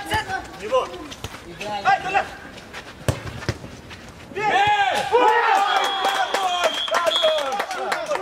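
Football players on an outdoor pitch shouting "Go!" during an attack, with a sharp knock of a ball being kicked about three seconds in. From about four seconds in, several men shout and cheer together, most likely greeting a goal, and a brief high whistle sounds in the middle of the shouting.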